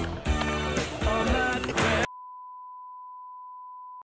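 A rock song with drums and guitar cuts off suddenly about halfway through. A steady single-pitch test tone, the 1 kHz bars-and-tone reference, takes over.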